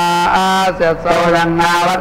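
Male voice chanting Sanskrit Vedic mantras in a continuous, steadily pitched recitation.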